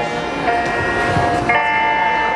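Live band music: a saxophone holds two long notes, the second higher, over guitar accompaniment.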